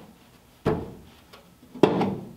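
Two blows on the sheet-steel firewall, about a second apart, each a sharp knock with a short ringing tail, as it is tapped down into place in the 1938 Ford's cowl.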